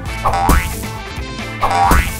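Two cartoon-style launch sound effects over background music: each a quick upward-sweeping swoop ending in a short sharp hit, one about a quarter second in and one near the end, as toy cars shoot off the launcher.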